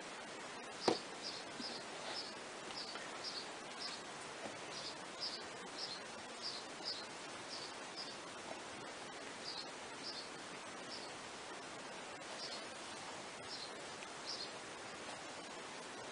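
Faint soft scratching and crumbling of compacted beetle-rearing substrate being broken apart by hand, in short scratches every half second or so over a steady hiss, with one sharper knock about a second in.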